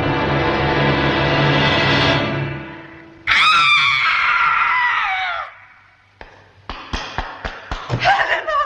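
Orchestral film score holding a swelling chord that fades out, then a woman's loud scream, wavering and falling in pitch for about two seconds. A quickening run of sharp knocks follows in the last two seconds.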